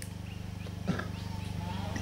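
Steady low electrical hum from a microphone and sound system during a pause in speech. There is a brief faint sound about a second in, and a faint drawn-out call in the background near the end.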